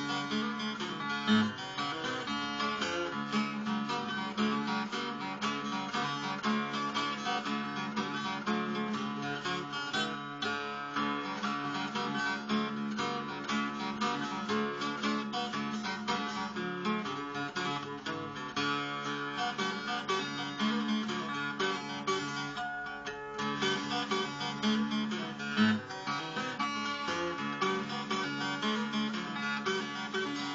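Solo twelve-string acoustic guitar fingerpicked, a folk tune with a steady bass line under a picked melody.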